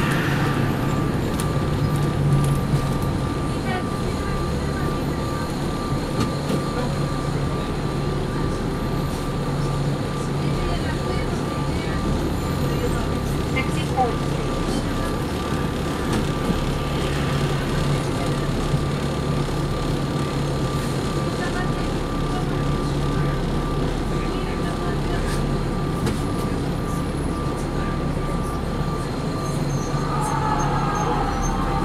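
Interior of a Neoplan USA AN459 articulated diesel transit bus under way: the engine and drivetrain run with a steady low hum, and a faint steady high tone runs above it.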